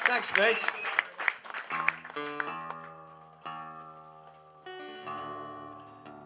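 Applause and voices fade out, then strings on acoustic guitars are plucked a few times and left ringing, each note slowly dying away, as the guitars are tuned between songs.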